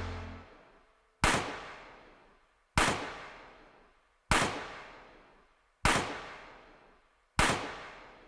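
A sharp, echoing bang repeated at an even pace about every one and a half seconds, five times, each ringing away before the next. At the very start the last held chord of a song dies out.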